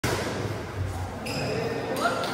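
A badminton doubles rally in a large indoor hall: rackets striking the shuttlecock and players' feet on the court, with the hall's echo.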